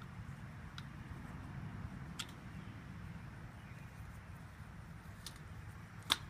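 A screwdriver twisting a steel wire T-post clip around a fence post, giving a few faint metallic clicks, under a steady low rumble.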